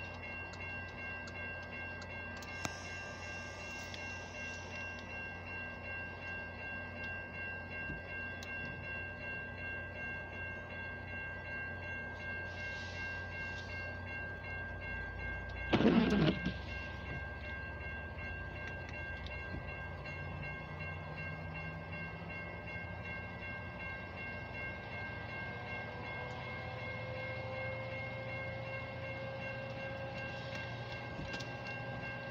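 Railroad crossing warning bell ringing in steady repeated strokes as a Metra commuter train rolls past with a low rumble. A loud burst of noise about a second long comes just past the middle, and near the end low pitched tones rise slowly.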